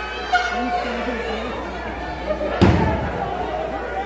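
A single heavy slam on a wrestling ring a little past halfway, with a short ring-out after it, over crowd chatter and background music.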